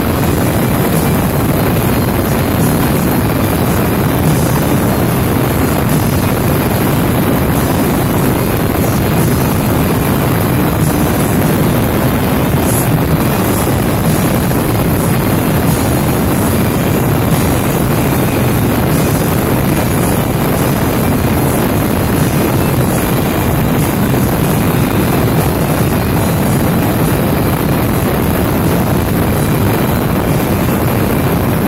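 Motorcycle cruising at highway speed: a steady, loud rush of wind and engine noise.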